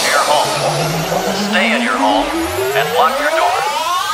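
Electronic tech house track in a build-up: the kick drum drops out and a synth riser climbs steadily in pitch throughout, with short chopped vocal samples repeating over it.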